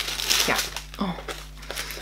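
Tissue paper and a cardboard box rustling and crinkling as they are handled, with a few light clicks, under a brief spoken 'ja, oh'.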